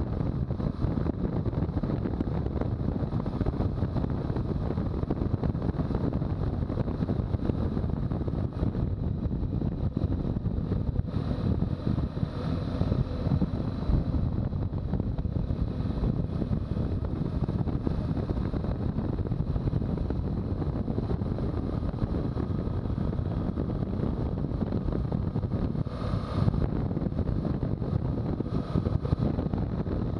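Steady wind rumble on the microphone of a motorcycle riding at cruising speed, a BMW R1200GS boxer twin, with engine and road noise mixed in beneath it.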